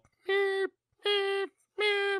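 A voice imitating a reversing truck's backup beeper: three held, same-pitch 'beep' tones evenly spaced under a second apart.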